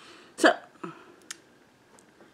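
A woman's short wordless vocal sounds: a sharp, loud burst about half a second in, then a smaller one falling in pitch, followed by a light click.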